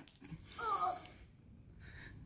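A short, breathy exclamation from a person's voice, lasting under a second and starting about half a second in.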